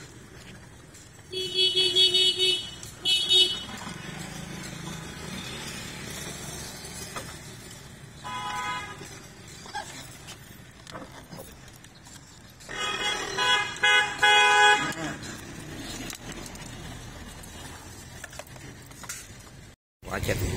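Vehicle horns honking at different pitches: a short honk and a brief second one a second or two in, another brief honk around eight seconds in, and a louder broken run of honks around thirteen to fifteen seconds in, over a steady low street hum.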